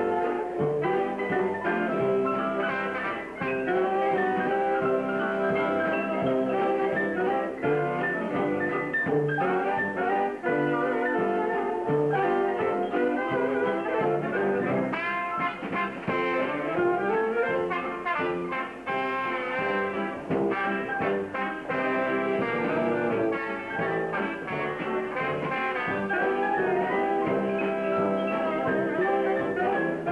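Live dance-band orchestra with a brass section playing a ballad, featuring a trombone played with a Solotone mute; some notes slide in pitch about halfway through.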